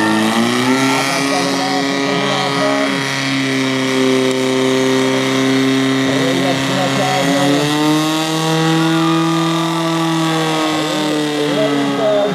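Portable fire pump's engine running hard at high revs, its pitch shifting up and down a few times as the load changes while it drives water through the hoses in a fire-sport attack. Voices shout over it.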